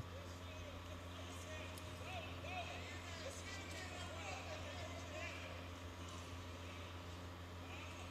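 Arena ambience: a steady low hum with faint, distant voices calling out from around the cage, loudest about two to six seconds in.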